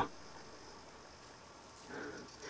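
Faint outdoor background: a low, even hiss of open air with no distinct event. A faint soft sound comes near the end.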